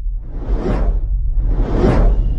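Cinematic intro sound effects: two swelling whooshes about a second apart, each building and then falling away, over a steady deep rumble.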